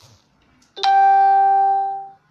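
A single loud chime tone that starts sharply just under a second in, holds steady for about a second, then fades away.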